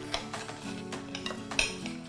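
Knife and fork clicking and scraping on a ceramic plate while cutting into a deep-fried, glazed cinnamon roll: a run of small clicks, the sharpest about one and a half seconds in.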